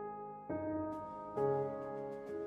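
Slow, soft background piano music: sustained notes, with new chords struck twice, about a second apart.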